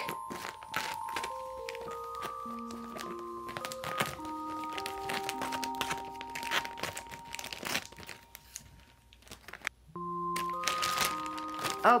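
Background music of slow, sustained notes, over the crinkling and crackling of a plastic vacuum-seal pillow bag being cut open. The music drops out briefly near the end, then comes back.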